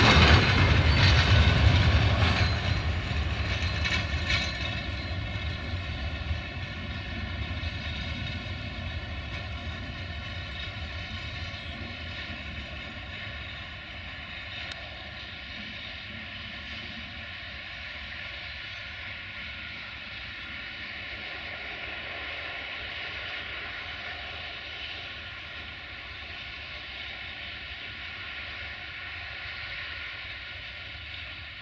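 Freight train of hopper wagons rolling past close by, then fading as it moves away over the first dozen or so seconds, leaving a steady distant rumble with a thin, steady high ringing from the wheels on the rails.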